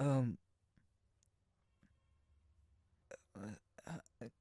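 A man's voice ending a word, then a pause of near silence for about three seconds, then a few short, soft breaths and mouth sounds as he begins to speak again.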